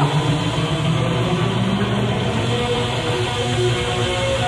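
A live hard rock band playing, guitar to the fore, with no singing in this stretch.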